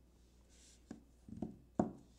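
A few short, sharp clicks and taps close to the microphone, the loudest near the end, over quiet room tone.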